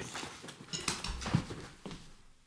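Scattered light knocks and rustling, growing fainter.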